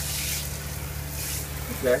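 Water spraying from a handheld shower head onto a shower pan, a steady hiss that swells twice, over a steady low hum.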